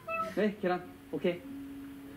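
A person's voice: a few short vocal sounds that bend up and down in pitch, then one long, steady hummed tone starting about a second and a half in.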